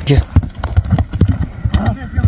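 Hooves of a horse close by thudding on soft, ploughed dirt: an irregular run of dull thuds as it moves off across the field. Brief voices can be heard alongside.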